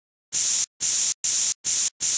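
Spray-can hiss sound effect: four short, even bursts of hissing, each about a third of a second long with brief gaps between, and a fifth starting at the very end.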